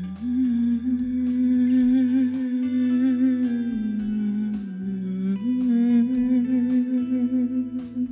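Film underscore: a wordless hummed melody held on long wavering notes, dipping in pitch about halfway through and rising back, over a low, pulsing bass accompaniment.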